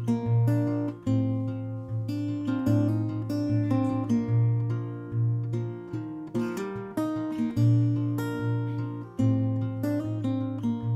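Solo acoustic guitar with a capo, picked notes ringing over a low bass note struck again and again.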